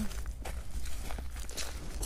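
Footsteps on a leaf-strewn dirt woodland path, a few separate steps over a steady low rumble.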